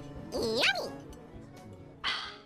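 A single dog bark, one short call rising and then falling in pitch about half a second in, over steady background music.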